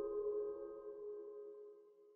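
Outro music sting: a held chord of several steady tones, slowly fading away toward the end.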